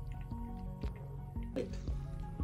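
Background music: a mellow track with held notes and soft clicks.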